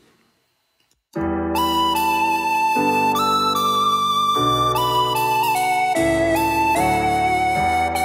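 After about a second of silence, a MIDI synth lead melody plays over keyboard chords and bass, sliding into some notes and holding others, with vibrato and slightly shortened notes that break the legato to make it sound more organic.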